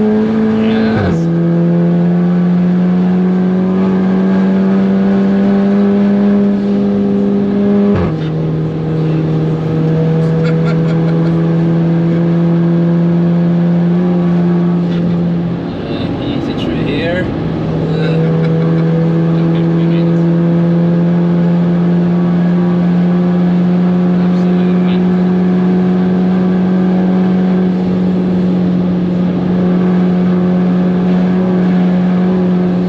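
Audi S3 2.0 TFSI turbocharged four-cylinder in a modified VW Caddy, heard from inside the cabin under hard acceleration. The engine note climbs steadily and drops sharply with upshifts about a second in and about eight seconds in. Around sixteen seconds there is a brief lift off the throttle, then it pulls again, climbing slowly to the end.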